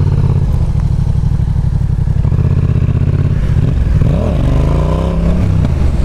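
Yamaha XSR 700's parallel-twin engine being opened up hard to pop the front wheel up in a short wheelie. The engine note swings up and down about four seconds in.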